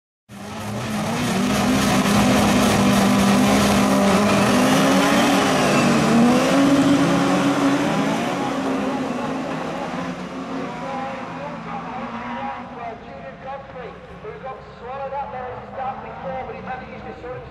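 A pack of rallycross cars racing at full throttle, several engines at once with their notes rising and falling. The sound is loudest over the first half and fades as the pack draws away.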